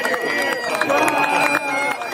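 A crowd clapping steadily, with bagpipes playing held notes under the applause; the pipe note steps up in pitch partway through.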